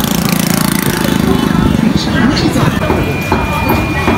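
A motorbike engine running close by, a rapid low pulsing. Voices of people in a busy street market come in over it from about halfway through.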